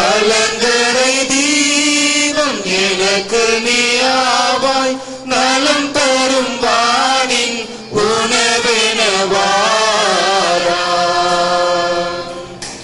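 A single voice singing a slow Tamil communion hymn in long, held, wavering notes, pausing for breath every two to three seconds.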